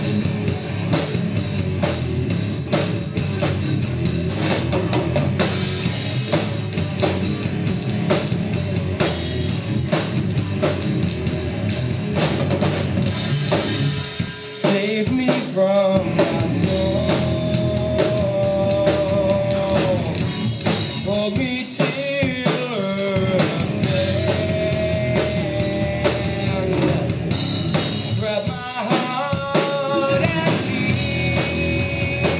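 Live rock band playing: electric guitars, bass and a drum kit with fast, dense drum hits. About halfway through the band dips briefly, then a held, bending melody line comes in over the playing.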